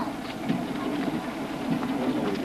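Pedalflo reciprocating piston pump and its spoked flywheel being worked by hand: a steady mechanical running noise with faint light clicks.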